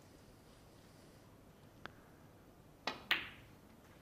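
A snooker shot: a light click of the cue tip on the cue ball, then about a second later two sharp clacks a quarter second apart as the cue ball strikes the black and the black is potted.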